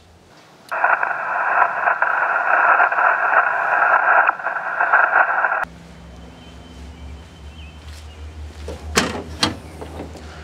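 Radio receiver static: a loud, steady hiss with a thin, band-limited sound like single-sideband audio, lasting about five seconds before it cuts off suddenly. After it comes a quieter low steady hum with a couple of sharp clicks near the end.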